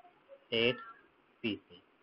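A man's voice: two short, untranscribed spoken sounds, about half a second in and again about a second and a half in, with quiet between.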